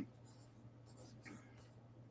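Near silence: room tone with a faint steady low hum and a faint soft noise about a second in.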